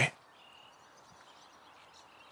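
Quiet outdoor ambience, a faint even hiss, right after a man's voice stops at the very start. A faint, brief high tone comes about half a second in.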